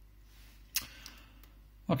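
Quiet room tone with a low hum and one short, sharp click about three quarters of a second in; a man starts speaking right at the end.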